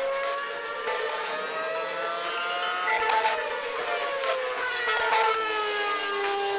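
Formula One car's 2.4-litre V8 engine running at high revs, a high-pitched note that holds and then slides gradually lower from about three seconds in.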